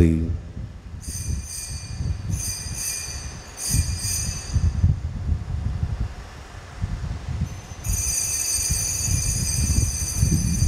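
Altar bells ringing at the elevation of the chalice during the consecration: a high metallic ringing in three spells, about a second in, again near three seconds, and from about eight seconds on, over a low rumble of knocks.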